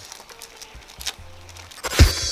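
Faint crinkling and clicking of small paper seasoning sachets being handled and torn open, under faint background music.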